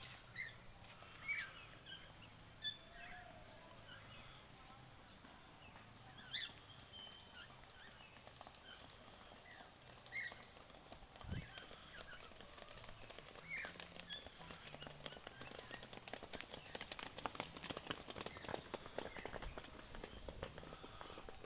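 Birds chirping now and then, short single calls scattered through a quiet garden background. A single dull thump comes about eleven seconds in, and a rapid patter of faint clicks runs through the last few seconds.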